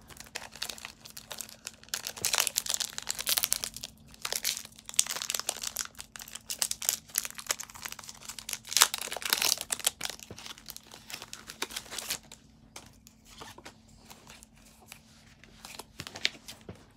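A foil Pokémon trading-card booster pack being torn open and crinkled by hand, with the cards slid out, a dense crackling for about twelve seconds that then thins to a few soft rustles.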